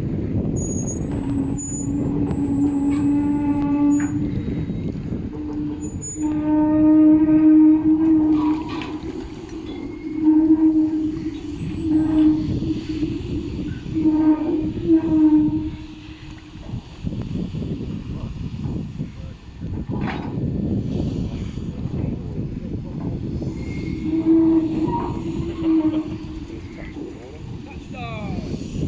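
Steel launching cradle carrying a barge rolling down slipway rails, with a pitched metallic squeal that comes and goes in stretches of a second or two, several times in the first half and once more near the end. Heavy wind rumble on the microphone runs underneath.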